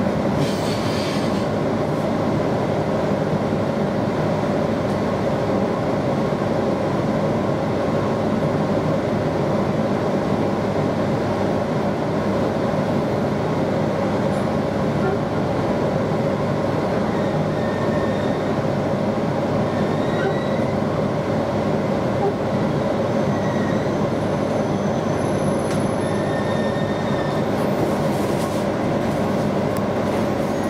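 Joban Line electric train heard from inside the carriage, running with a steady rumble of wheels and motors. Short high-pitched squeals come and go through the second half as the train slows toward a station.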